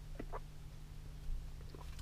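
A person taking a few faint gulps of a drink, short swallowing sounds in the first part, over a steady low hum.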